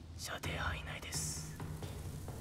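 Soft whispering over a low steady drone, with a short hiss about a second in.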